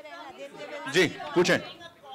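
Speech only: voices talking over one another, the words unclear, with two louder syllables in the middle.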